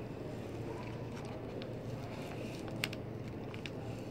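Steady low background hum, with faint rustles of paper and transfer tape being pressed down by hand and a light click about three seconds in.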